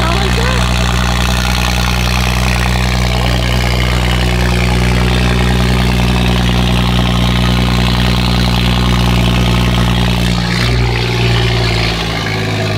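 Car engine idling steadily at one pitch, close by. The pitch shifts slightly about ten and a half seconds in.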